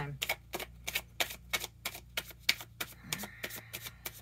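Deck of tarot cards being shuffled by hand: a fast, irregular run of crisp clicks and snaps, several a second, as the cards strike one another.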